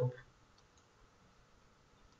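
A few faint, sparse computer mouse clicks against near silence.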